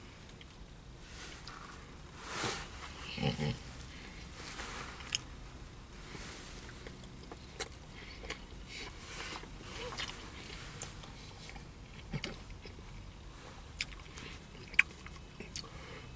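A person biting into and chewing a sandwich, with scattered small wet mouth clicks throughout and a short voiced hum about three seconds in.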